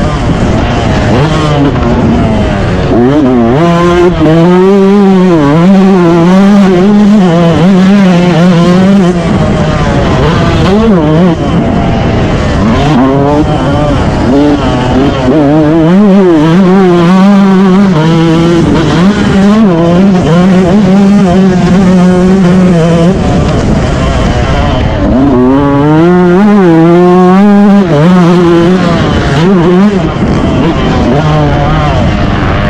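Motocross bike engine heard from on board, revving up and dropping off again and again as the throttle is worked round the track. Its pitch climbs and falls every few seconds over a steady rumble of wind and ride noise.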